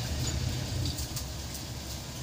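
Steady low rumble of a moving vehicle's engine and road noise, heard from inside the cabin, with a few faint clicks about a second in.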